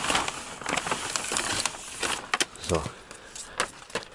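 Handling noise inside a car: rustling and a few short, sharp clicks as a gauge pod and its loose wiring are moved about.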